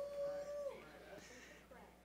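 A faint, high voice-like note held for under a second near the start, sliding up into it and falling away at the end, then near quiet.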